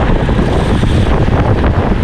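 Wind buffeting the microphone of a camera on a moving road bike: a loud, steady low rumble.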